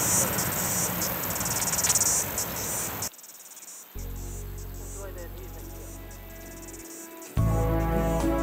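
High-pitched insect chirping over outdoor ambience, cut off abruptly about three seconds in, leaving a low steady hum; near the end a recorded song's instrumental music starts up.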